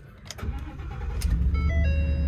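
Ford 6.2-litre gasoline V8 starting about half a second in, its low rumble building and settling into a steady idle. From about a second and a half in, music comes on alongside it.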